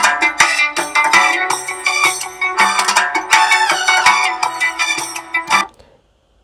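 GarageBand playing back a song built from Apple Loops at 82 BPM: a piano loop, a synth lead, a rhythm guitar, a riq frame drum and Latin percussion together. The playback stops abruptly about five and a half seconds in.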